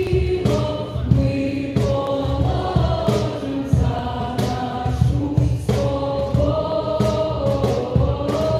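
A choir of voices singing together over a steady drum beat that falls about every two-thirds of a second.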